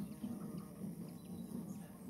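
Faint, steady low buzz of a bumblebee's wings, wavering slightly in loudness.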